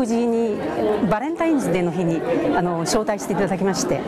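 A woman speaking Japanese, with the chatter of a crowd in a large hall behind her voice.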